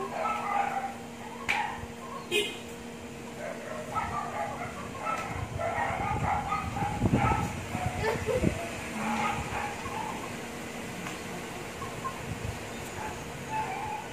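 A dog giving short yips and whines while play-fighting with a rooster, over a steady low hum.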